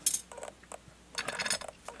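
Small metal clicks and clinks from a lock cylinder and its removed screws being handled and set down on a hard surface: one sharp click at the start, then a scatter of lighter clicks.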